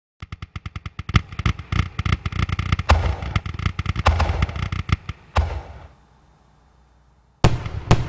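Fireworks: a rapid string of crackling pops with louder bangs about three, four and five and a half seconds in. After a short pause, one more bang comes near the end.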